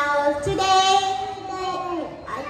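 A young child's voice, amplified over a microphone, drawing out one long sing-song note held for more than a second after a short opening sound.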